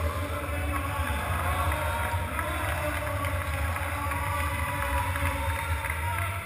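Steady ambience of a large sports hall: a constant low rumble with indistinct voices murmuring in the background.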